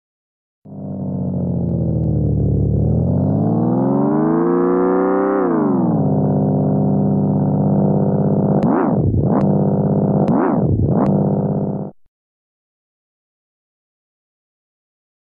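Synthesized organ tone from the Organito 2 VST plugin, starting about half a second in. It slides down in pitch, rises again, settles on a steady note, then swoops sharply down and back up twice in quick succession before cutting off about two seconds before the end.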